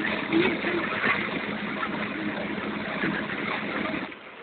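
Passenger train running, its steady rumble and clatter coming in through an open barred coach window, with the noise falling away sharply at the end.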